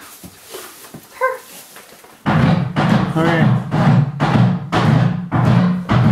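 A horse repeatedly banging on a sled: loud, rapid knocks, about three a second, starting about two seconds in.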